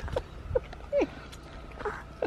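A few brief, quiet vocal sounds, one a short falling note about a second in, over a low background rumble.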